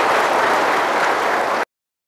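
A large audience applauding steadily; the applause cuts off suddenly about a second and a half in.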